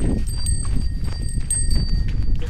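Wind rumbling on the microphone, with scattered soft thuds and clicks of a bullock's hooves and feet trudging through ploughed soil, over a faint steady high-pitched whine.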